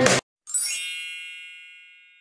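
Music cuts off abruptly, then a bright, high chime sound effect rings out about half a second in and fades away over the next two seconds.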